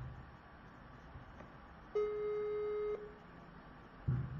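Ringback tone of an outgoing phone call: one steady beep about a second long, the line ringing before the call is answered.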